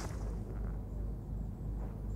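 A steady low hum, like a distant generator or machine, with faint outdoor air noise.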